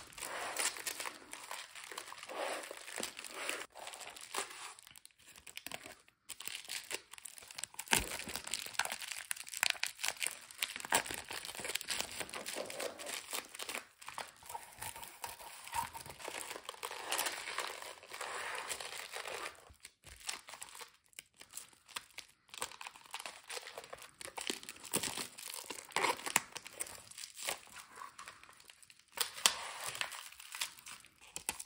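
Plastic bubble wrap crinkling and rustling in irregular bursts as it is handled and wrapped around crystal pieces, with a few short pauses.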